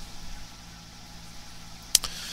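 Quiet background noise of a voice-over recording: a steady low electrical hum with light hiss, and one sharp click near the end.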